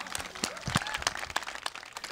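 Scattered clapping from a small crowd, many irregular sharp claps at a moderate level.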